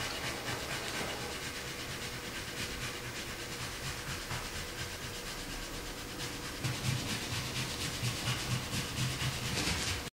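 Paintbrush scrubbing watercolour on paper: a steady soft hiss with fine close-set scratches, and a few low knocks in the second half.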